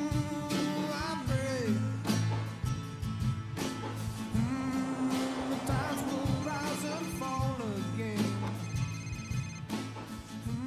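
Background music: a slow song with sustained low notes, melodic lines and occasional drum hits. Twice in the second half, a high, fast-pulsing electronic trill sounds over it.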